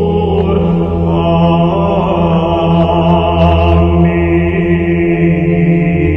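Orthodox church chant: voices singing over a low, steady held drone note, with more sung lines joining about a second in.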